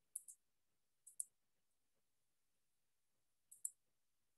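Computer mouse clicking in a quiet room: three quick double clicks, one right at the start, one about a second in and one near the end.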